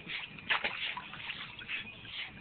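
Water splashing and sloshing in a small pool as Pembroke Welsh Corgis move about in it, with a sharper splash about half a second in.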